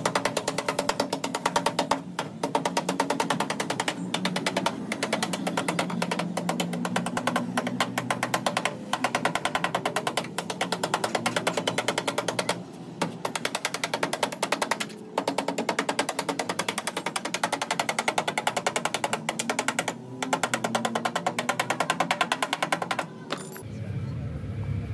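Body hammer tapping quickly and evenly on sheet steel against a hand-held dolly, working the welded bottom edge of a car door, with a few short pauses between runs.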